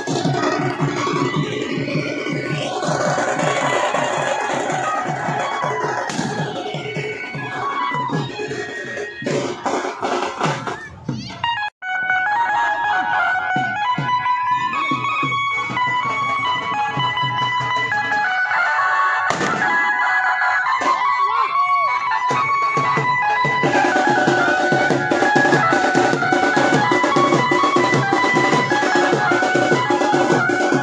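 Loud Indian dance music with a drum beat, played through a procession sound system of horn loudspeakers. The music drops out for a moment about twelve seconds in, then carries on.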